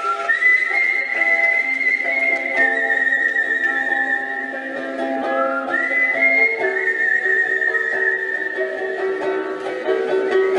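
A melody whistled into a microphone over a ukulele: long high whistled notes, each sliding up into its pitch, above picked ukulele notes.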